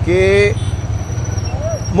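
Motorcycles ridden slowly: a steady low engine rumble, under a drawn-out spoken syllable that ends about half a second in.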